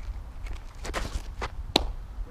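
Softball pitch: cleats scuff the dirt through the windup and stride, then a sharp pop near the end as the ball smacks into the catcher's mitt.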